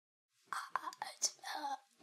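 A person's voice, quiet and close to a whisper, starting about half a second in after dead silence, with small mouth clicks.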